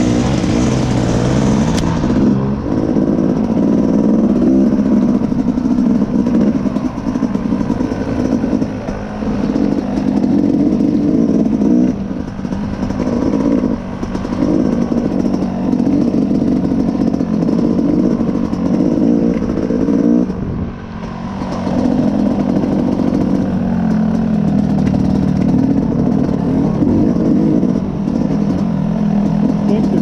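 Dirt bike engine under way on a trail, rising and falling with the throttle, with a few brief lulls where the throttle is shut off, the deepest about twenty seconds in.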